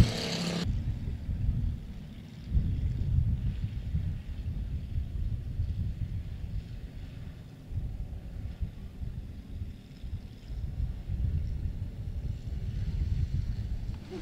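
Low, uneven rumble of a field of pure stock race cars running slowly under caution, mixed with wind buffeting the microphone.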